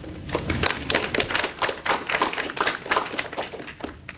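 A small audience applauding, the separate hand claps distinct, dying away near the end.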